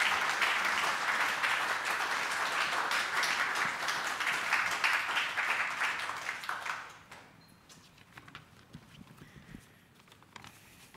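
Audience applauding: a dense patter of many hands clapping that dies away about seven seconds in.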